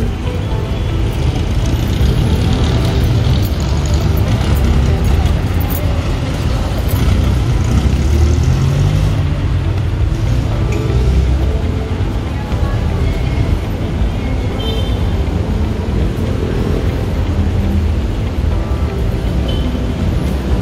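Steady city street traffic noise with a low rumble of passing vans and cars, mixed with light background music.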